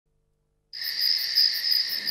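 Crickets chirping in a steady high trill, starting suddenly just under a second in after silence.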